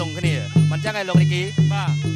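Traditional Kun Khmer ringside music: a nasal reed pipe (sralai) playing a winding, gliding melody over low drum beats about two a second.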